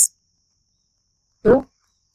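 Speech only: a voice finishes a word, then near silence, then one short spoken word about one and a half seconds in.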